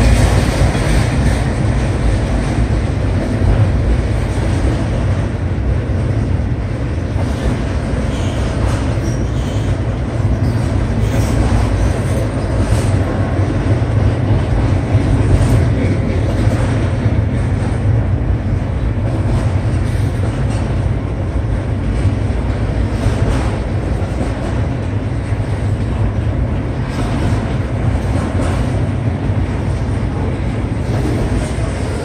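Autorack freight cars rolling past at a grade crossing: a steady low rumble of steel wheels on rail, with occasional faint clicks.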